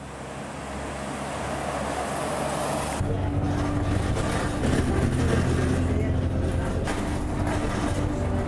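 Road traffic noise swelling as a vehicle approaches along the road. About three seconds in it changes abruptly to the inside of a moving bus: a steady, low engine drone with road noise.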